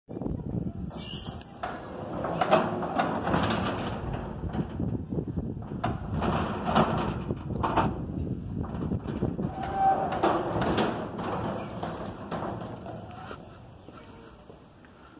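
PPA Jetflex electric gate opener driving a steel up-and-over garage gate closed and then open again: a steady running sound with repeated clanks and rattles from the sheet-metal gate, dying away near the end.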